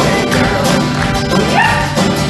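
A live folk-rock band with accordion, guitars, bass, fiddle and drums playing an upbeat Irish tune, with a short rising high cry near the end.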